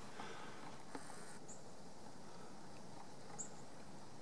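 Faint outdoor ambience: a steady low hiss, with two brief high chirps, one about one and a half seconds in and one near three and a half seconds.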